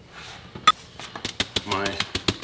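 Kitchenware clinks: one sharp metallic clink, as of a metal measuring cup being set down, followed by a quick run of lighter clicks and rattles as a foil-lined sheet pan is picked up.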